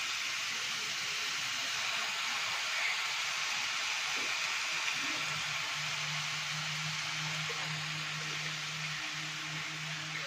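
Pork and onions sizzling steadily as they fry in an aluminium pan. A low steady hum joins about halfway through.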